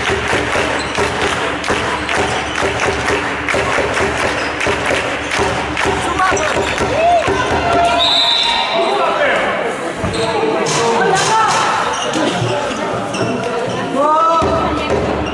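Handball match sounds in a large sports hall: the ball bouncing and knocking on the hard floor, with players' voices calling out. The knocks are thickest in the first half, and short calls take over later.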